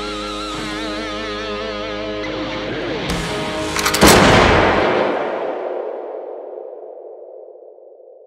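Electric guitar holding notes with a wavering vibrato. About four seconds in comes a sharp, loud hit, the logo sting of the end card, and a ringing tone then fades away slowly.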